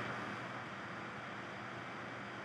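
Steady low background hiss: room tone, with no distinct events.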